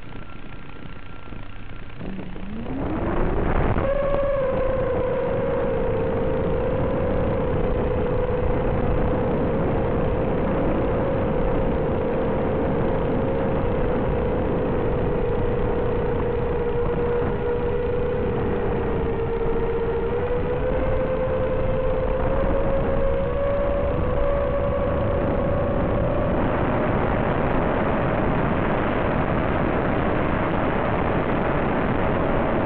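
Electric motor and propeller of an FPV model aircraft spooling up about two to four seconds in, the pitch climbing quickly, then running at a steady pitch that sags a little and rises again in the second half. A hissing rush of air grows near the end.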